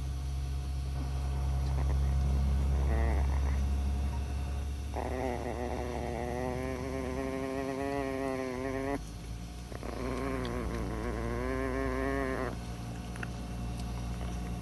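Tiny chihuahua growling: a low steady rumble at first, then two long, higher growls that waver in pitch, separated by a short pause. It is a warning growl at a larger dog sniffing too close to her.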